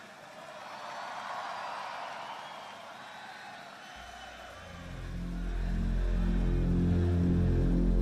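Concert crowd cheering, then about four seconds in a low, pulsing electronic bass line fades in and swells as a rock band starts the intro of its next song.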